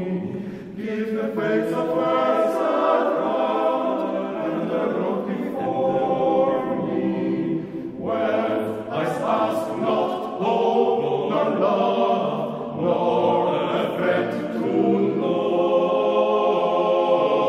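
Men's choir singing in several long phrases, with short breaks between them.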